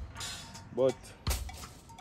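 A short rustle, then a single sharp knock about a second and a half in, from ackee pods being gathered up off the ground by hand. A man says one short word between them.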